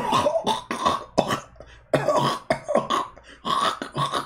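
A man laughing hard and breathlessly in rapid, coughing bursts.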